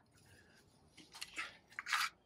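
Faint crunchy rustles and scuffs of handling: a few short ones about a second in and another near the end.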